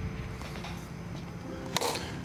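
A plastic bat hitting a Blitzball once near the end, a single short hit over a low steady rumble of background noise.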